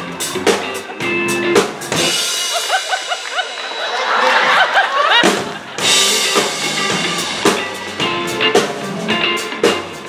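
Live rock band, drum kit, bass and electric guitar, playing an upbeat groove for a game of musical chairs. The music cuts out about two seconds in while a crowd of voices shouts, shrieks and laughs. The band comes back in about five seconds in.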